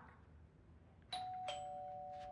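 Two-tone ding-dong doorbell chime, starting about a second in: a higher note, then a lower one, both ringing on.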